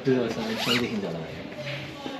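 Zipper of a zip-up jacket being pulled open: a short rising rasp about half a second in, with voices in the background.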